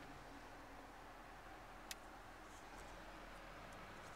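Near silence in the cabin of an idling 2005 Acura TL: only a faint low hum from the quietly running engine, with no whine from belts or chains. There is one soft click about two seconds in.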